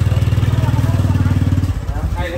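An engine running close by, a steady fast low pulse that fades near the end, with faint voices underneath.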